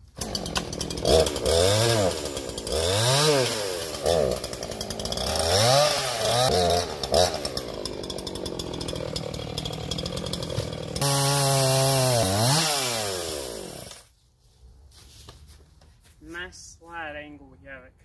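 Gas chainsaw revved up and down several times, then cutting a wooden stump at a steadier pitch before a last high run. It winds down and stops about 14 seconds in.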